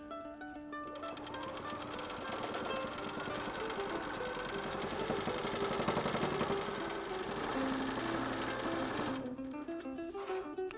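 Bernina sewing machine stitching rapidly while free-motion quilting on a quilt frame, starting about a second in and stopping shortly before the end. Light plucked-string background music plays underneath.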